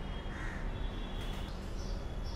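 A crow cawing, with a call about half a second in, over a steady low background rumble.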